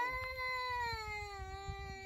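A young child crying: one long wail held for about two seconds, slowly falling in pitch.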